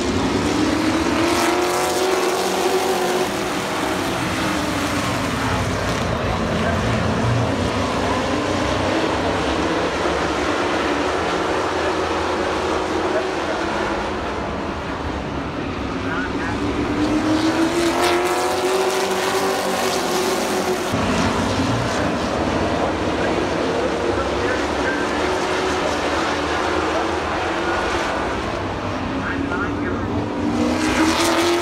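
A pack of stock cars circling a paved oval at slow speed. The engine note swells and falls twice as the field goes by.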